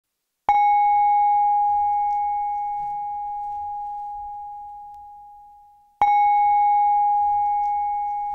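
Singing bowl struck twice, about five and a half seconds apart. Each strike gives a sharp onset and then a clear, steady ring with a few higher overtones that slowly fades. The first ring has died away just as the second strike comes, and the second is still ringing near the end.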